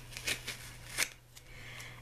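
A strip of duct tape being lifted and folded over by hand: a few short crackly clicks and rustles from the tape, the sharpest about a second in.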